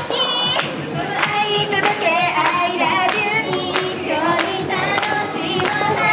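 J-pop idol song: a girls' group singing in unison over a backing track with a steady beat, with hand claps on the beat.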